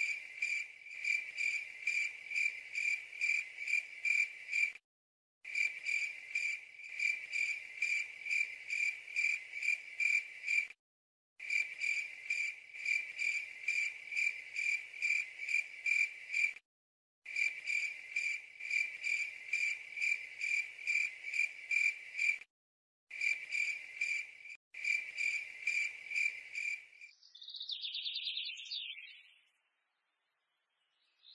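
Crickets chirping in a steady high pulsing rhythm, about three chirps a second, cut by brief dead silences every five or six seconds. Near the end the crickets stop and a bird chirps briefly.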